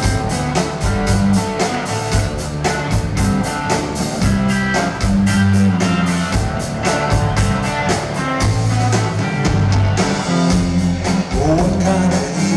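Live electric blues-rock band playing an instrumental passage: electric guitars over bass guitar and drums, with a steady cymbal beat.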